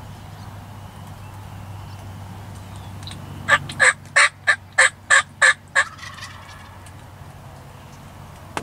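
A run of eight loud, evenly spaced turkey yelps, about three a second, starting midway through and lasting a little over two seconds.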